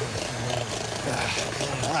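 Electric hand mixer running steadily in a bowl of eggs, a continuous motor hum.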